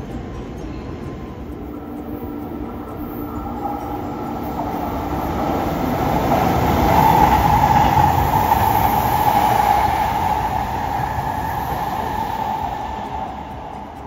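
JR Kyushu 883 series 'Sonic' limited-express electric train passing through the station. The rumble builds to its loudest about seven to ten seconds in, with a steady high tone over it, then fades as the train moves away.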